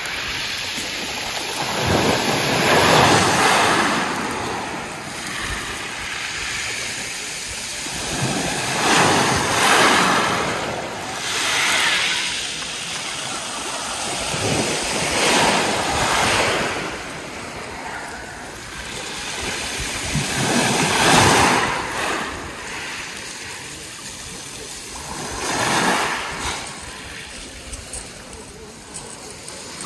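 Small waves breaking and washing up a pebble beach, the surf swelling loud and fading again in about six surges a few seconds apart.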